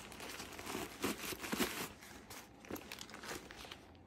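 Plastic packaging crinkling and rustling, with irregular handling scrapes, as hands work a denim bag out of its wrapping and open its zipped compartment.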